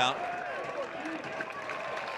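Ballpark crowd ambience: a low, even murmur with faint scattered voices.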